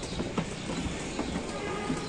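Footsteps knocking irregularly on wooden floorboards, with faint voices in the background.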